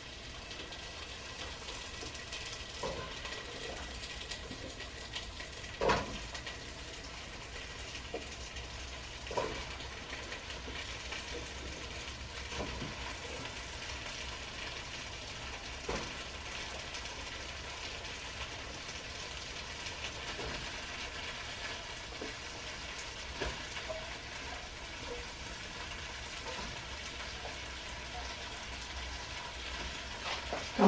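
Vegetables frying in a pan, a steady sizzle, with a few short metal clinks of a utensil against the pan now and then.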